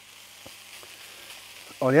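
Ground beef and diced bell peppers sizzling as they fry in a pan, steady and fairly quiet, with a few light clicks of a spatula against the pan.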